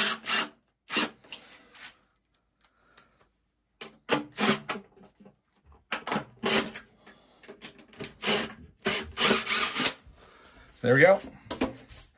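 Cordless drill-driver driving screws through a metal pipe bracket into wall anchors in a concrete-block wall, in several short bursts with pauses between them.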